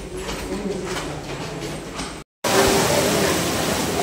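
Footsteps and murmuring voices of a group of children walking down a stairwell, then, after a brief dropout about two seconds in, steady rain with a crowd's voices.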